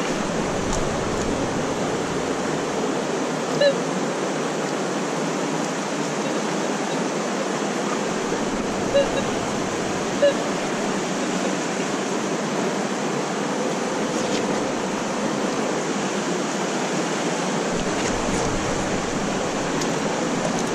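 Steady rushing of a fast-flowing river, with three short, sharp blips on top: one about four seconds in and two more close together around nine and ten seconds.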